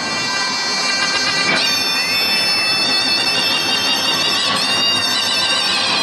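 Zurna, the loud Turkish double-reed shawm, playing a folk dance melody in long sustained notes with a few sliding notes.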